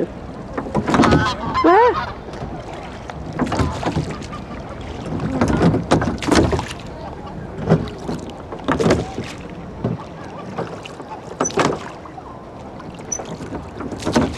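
Oars of a small rowing boat working through the water, each stroke a short splash and knock, coming at an uneven pace of roughly one a second.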